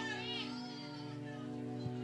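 Soft background music holding a sustained chord through a pause in the preaching, with a brief high wavering cry in the first half-second.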